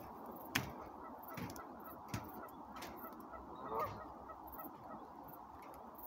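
Faint outdoor background with one short bird call about two-thirds of the way through, and a few soft knocks.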